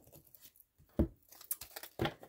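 Quiet handling of a deck of oracle cards: soft rustling and light clicks as the deck is picked up and shuffled, with one brief louder knock about halfway through.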